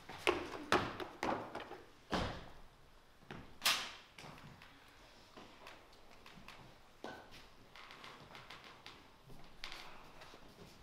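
Several knocks and thumps in the first four seconds, then only faint room noise: footsteps and movement of actors on a stage floor.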